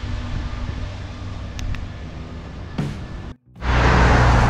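Road traffic sound with a car passing, under a faint background music bed. The sound cuts out briefly near the end, then comes back louder as a low outdoor rumble of traffic.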